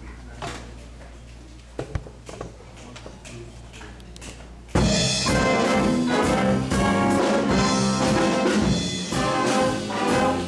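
A few light clicks in a quiet room, then about five seconds in a student jazz big band comes in all at once, its brass section of trumpets and trombones playing loudly over the rhythm section.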